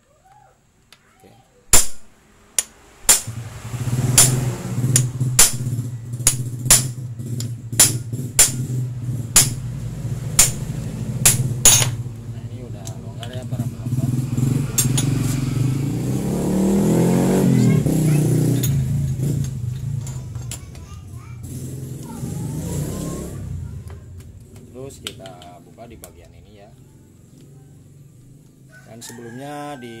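An engine running, its pitch and loudness swelling and gliding up and down in the middle. It comes with a loud click about two seconds in and a run of sharp clicks, about two a second, through the first dozen seconds.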